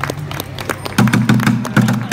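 Drumsticks beating quick strokes on an upturned plastic bucket used as a drum, ending a song. The bucket's low tone comes in strong from about a second in, under rapid sharp stick hits.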